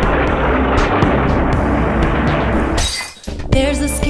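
Cartoon soundtrack: background music under a long noisy, crash-like sound effect, cut by a short sharp hiss near three seconds. A new pitched tune starts shortly before the end.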